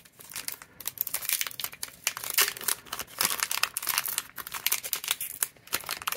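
Foil trading-card booster pack wrapper crinkling as it is handled and torn open: a continuous run of quick crackles and rustles.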